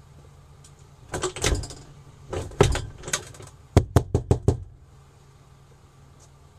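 Knocking on a door: a few uneven knocks, then a quick run of five sharp raps near the middle.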